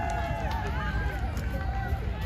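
Overlapping chatter of several people outdoors, with high-pitched voices among them, over a steady low rumble.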